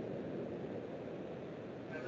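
Low, steady background room noise with a faint even hiss and no distinct sounds.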